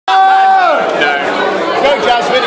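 A man's loud held shout that drops in pitch after about half a second, followed by several people chattering over each other.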